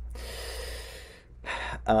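A man's long, audible breath close to the microphone, then a second short, quick breath about a second and a half in, just before he speaks, over a steady low hum.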